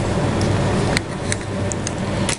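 Low, steady rumbling handling noise from a hand-held camera being moved, with a few small plastic clicks.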